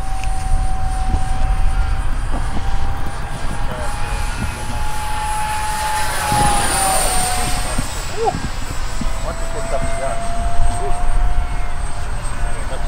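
A 50 mm electric ducted fan on a 3D-printed F4D Skyray model jet whines steadily as the model flies by. The whine drops in pitch as the model passes closest, about six to seven seconds in, over a low rumble.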